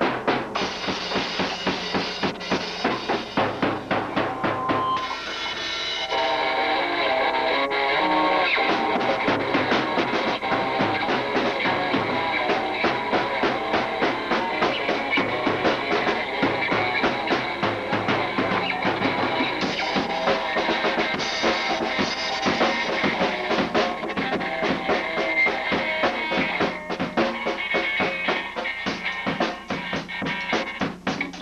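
A Tama Swingstar drum kit and an electric guitar playing together in a loose rock jam, the drums keeping a fast, steady beat. About five seconds in, the drumming thins for a few seconds and the guitar's held notes come through more plainly before the full beat returns.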